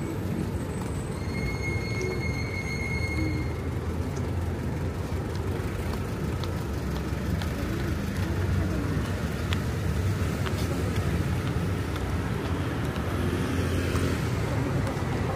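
Street traffic: a steady low rumble of passing vehicles, with a high-pitched squeal lasting about two seconds from about a second in.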